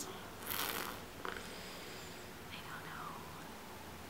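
A person's soft breathy exhale, a hiss about half a second in, followed by a couple of fainter mouth and breath sounds over quiet room tone.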